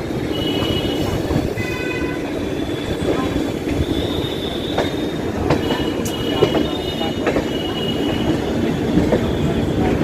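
Indian Railways LHB passenger coach rolling into a station: a steady rumble of wheels on rail, thin high wheel squeals coming and going, and scattered sharp clicks as the wheels cross rail joints and points.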